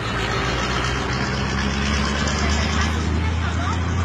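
Steady low rumble of motor vehicles with an even hiss over it, and faint voices near the end.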